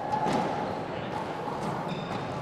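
Indoor sports hall ambience with faint background voices and a couple of soft knocks.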